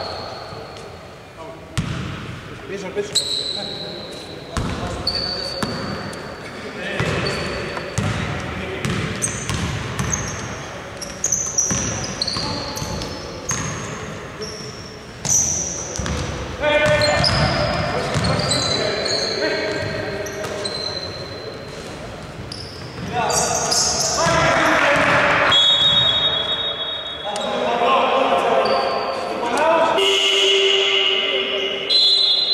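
A basketball bouncing on a hardwood gym floor and sneakers squeaking on the court during play, with players' voices calling out, all echoing in a large hall.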